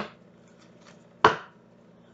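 A tarot deck knocking against a tabletop while being handled: two sharp knocks about a second apart, the second louder, with faint card clicks between them.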